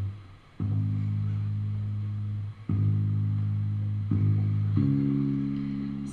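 The bass part of a ballroom dance track played on its own: deep, long, heavy notes, each held a second or two. A short gap comes early, then a few more sustained notes follow one after another.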